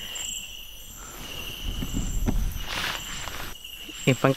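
Crickets and other night insects chirping in steady, evenly pulsing high tones. A brief rustle of movement is heard near the middle.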